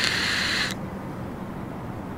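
Electronic vape mod drawn on in one long pull: a steady hiss from the firing coil and drawn air, which cuts off suddenly about three quarters of a second in.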